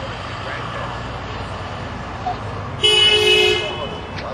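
A car horn honks once, a single steady blast just under a second long, about three seconds in, over background voices and a low traffic rumble.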